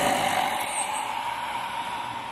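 A loud rushing hiss with a faint steady tone in it, slowly fading.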